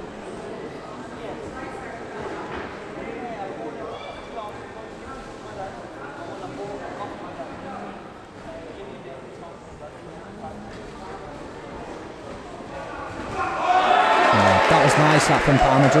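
Boxing-hall ambience: a murmuring crowd with scattered voices and occasional knocks and thuds, which may be punches landing. About thirteen seconds in, loud voices come in close and take over, crowd and commentary together.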